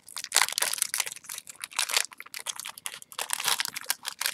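Foil Yu-Gi-Oh booster pack wrapper crinkling in quick, irregular crackles as it is pulled and torn open by hand.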